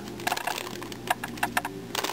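Plastic 3x3x3 Rubik's Cube being turned by hand, its layers clicking and clacking in a quick, uneven run of about a dozen clicks as the red cross edge is placed.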